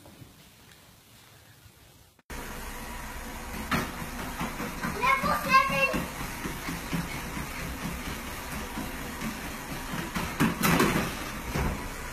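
Faint at first, then about two seconds in a treadmill belt and motor running, with a child's quick footfalls thumping on it. A child's voice calls out around the middle and again with a loud cry near the end.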